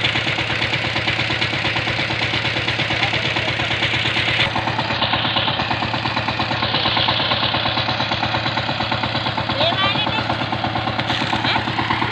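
Two-wheel hand tractor's single-cylinder diesel engine idling steadily, with a fast, even chug.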